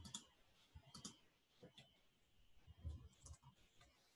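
Faint, irregular clicks from a computer mouse and keyboard, about half a dozen in all, some coming in quick pairs.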